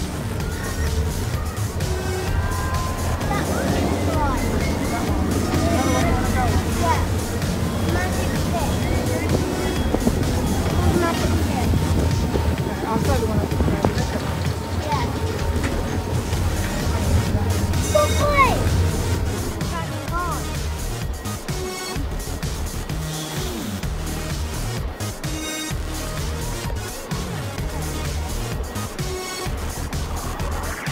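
Amusement park sound: music playing with voices around and a steady low hum underneath, which drops away about twenty seconds in.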